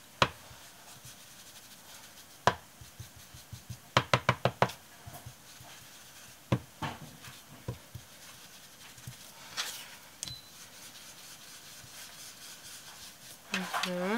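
Ink-blending tool dabbed onto paper on a desk: scattered sharp taps, with a quick run of about six taps around four seconds in and a few more a couple of seconds later.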